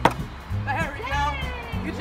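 A thrown hatchet strikes a round wooden target and sticks, one sharp impact right at the start, over background music.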